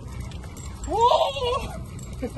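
A short, loud, wordless shout from a person, its pitch rising and falling, about a second in, over a steady low rumble.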